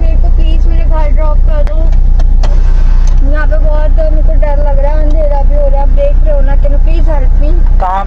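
A car engine running steadily with a low hum, heard from inside the cabin, with muffled voices over it.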